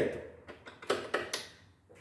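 A few short, light clicks and taps, spread over about a second, fading to very quiet.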